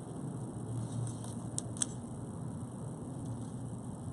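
Faint handling of thin leather cord as it is worked through a knot by hand, with two small ticks just under two seconds in.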